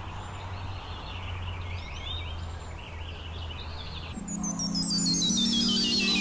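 Intro of a hip-hop track: birds chirping over a low hum and hiss. About four seconds in, the beat enters with low sustained synth chords and a quick run of high notes stepping down in pitch.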